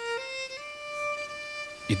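Solo violin, bowed, playing a slow melody that climbs in a few short steps to one long held note.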